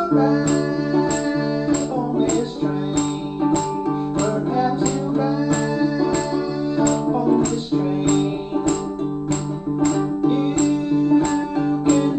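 Baritone ukulele strummed in a steady rhythm, with a man singing a folk song over it.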